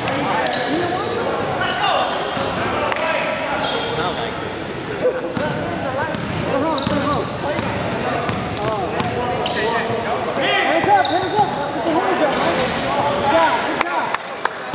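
Indoor basketball game on a hardwood gym floor: a ball bouncing, sneakers squeaking in short sliding chirps, and players' voices calling out through the play.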